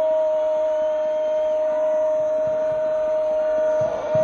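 Football commentator's long drawn-out goal call: one "gol" shouted and held at a steady, high pitch for several seconds, breaking off just before the end.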